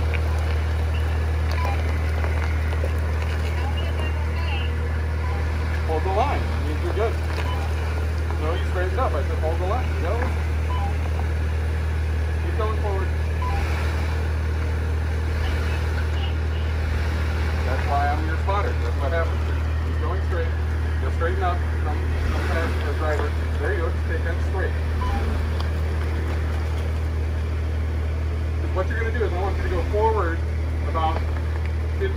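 Jeep Wrangler JL engine running with a steady, unchanging low drone as the Jeep crawls slowly through mud, with indistinct voices now and then.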